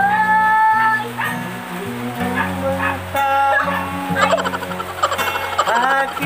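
Acoustic guitar accompanying a man and a woman singing together. Near the end a voice slides sharply up in pitch.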